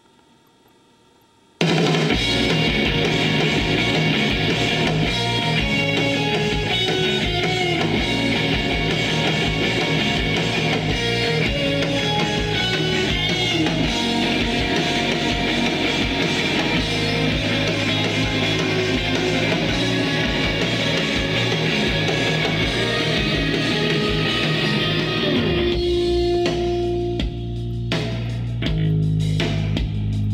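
Playback of a rock band's unfinished instrumental mix, with no vocals yet, over studio monitors: guitar, bass and drums come in suddenly after about a second and a half of quiet and play on loud, then thin out to a sparser part with long bass notes near the end.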